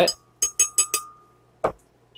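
A spoon clinking against a glass blender jar four times in quick succession, knocking whole grain mustard off into it, with a faint ring; one more single knock follows.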